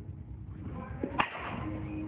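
One loud, sharp crack of a baseball impact a little after a second in, with a fainter tap just before it and a short ring after.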